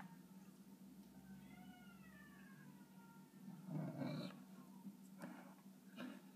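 A domestic cat meowing faintly: one drawn-out call that rises and falls in pitch about a second in, then a louder, noisier sound about four seconds in. A steady low hum runs underneath.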